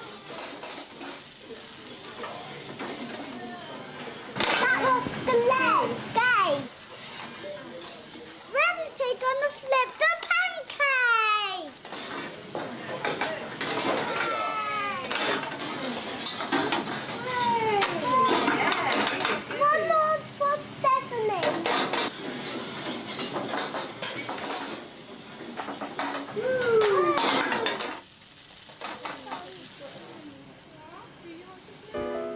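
Children's excited exclamations, their voices sliding up and down in pitch, over the clatter of black steel frying pans knocking on a gas range as thin pancakes are tossed and flipped, with pancakes sizzling in the pans.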